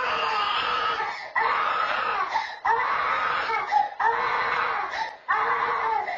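Toddler crying in a crib: about five long, high-pitched wails, each broken off by a quick breath.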